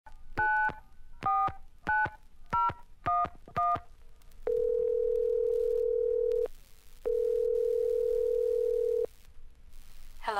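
Touch-tone telephone dialing: six short keypad beeps in quick succession, then the line ringing through with two long ringback tones of about two seconds each.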